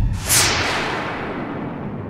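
A dramatic whip-like whoosh sound effect from a TV drama soundtrack: a sudden swish that falls in pitch just after the start, then fades slowly away.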